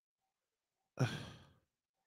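A man's single exasperated sigh into a close headset microphone, a short breathy exhale about a second in that fades out within half a second.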